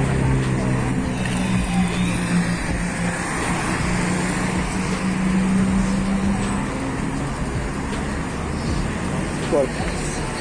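City street traffic: a vehicle engine's steady low hum that stops about two-thirds of the way in, over the noise of cars driving past.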